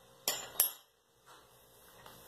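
Two sharp clinks about a third of a second apart, then a faint tap: a small hard object being handled and knocked against a stone worktop.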